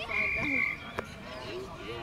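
A short whistle blast, one steady high note held a little over half a second, over sideline voices, with a sharp knock about a second in.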